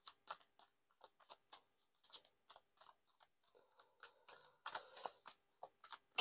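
A deck of tarot cards being shuffled by hand: faint, irregular soft clicks and slaps of the cards against each other, a few a second, growing busier near the end.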